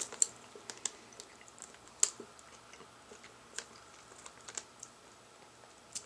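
Faint, irregular mouth clicks and smacks from a person chewing a gummy vitamin, a sharp tick every second or so.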